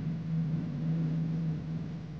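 A low steady drone under a faint even hiss.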